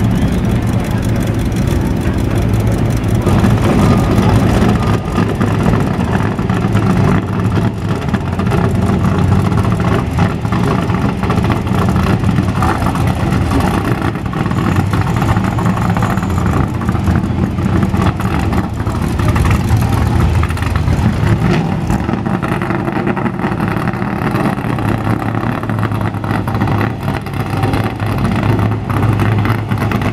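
Car engines running at low speed, first a hot rod's exposed V8 and then a stock race car's V8, as a steady low rumble. People are talking in the background.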